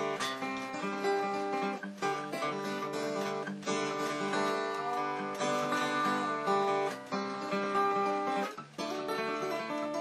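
Acoustic guitar played fingerstyle in a G suspended-second altered tuning, a flowing tune of plucked notes and chords. A few notes glide up in pitch, which are country-style bends made by pushing the B string (tuned down to A) behind the nut.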